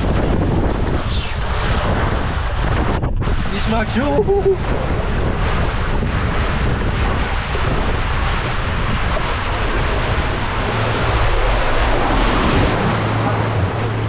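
Rushing water and air buffeting an action camera's microphone as a rider slides fast down an open water slide, with a steady loud rush of noise. Near the end the rider plunges into the splash pool and the sound turns to a duller low rumble.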